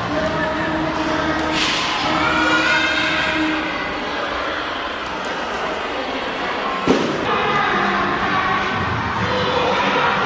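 Chatter of a crowd of young children and adults, many voices at once, with a single sharp knock about seven seconds in.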